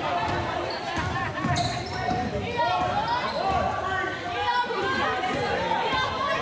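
Basketball dribbling on a hardwood gym floor, with players and spectators shouting in a large gym.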